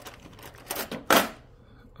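Hands handling small repair tools over a phone on a rubber mat: two short scraping or rustling noises, the louder one just past the middle.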